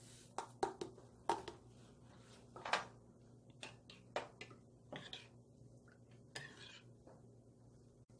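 Faint, irregular clinks and scrapes of a metal spoon against a glass bowl while red pepper flakes are stirred into a soy-sauce seasoning.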